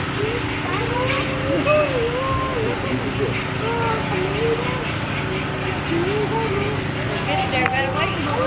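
Steady low mechanical hum of a running motor or engine, several constant tones, with people talking in the background.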